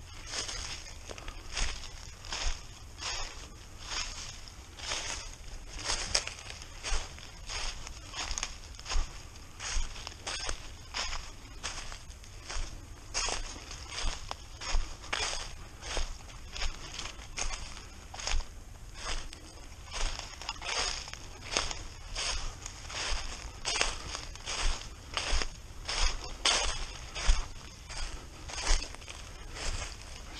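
Footsteps crunching through a thick layer of dry fallen leaves at a steady walking pace.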